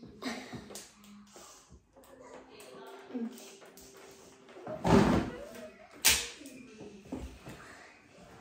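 Quiet children's voices with handling noises, and two sharp knocks or thumps: the loudest about five seconds in, another about a second later.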